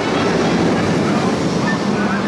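Jurassic World VelociCoaster train on a test run, rushing along its steel track with a loud, steady rumble.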